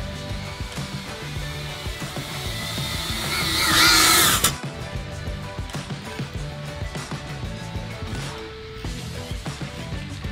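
FPV quadcopter's motors and propellers whining, rising in pitch and loudness as it comes in to land, then cutting off abruptly about four and a half seconds in. Background music plays throughout.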